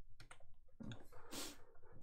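Faint, scattered clicks of a computer mouse being handled, several over two seconds.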